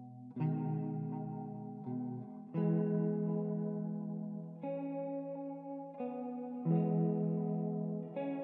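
Ambient music on a single clean guitar run through effects: slow chords, a new one struck every second or two and left to ring and fade.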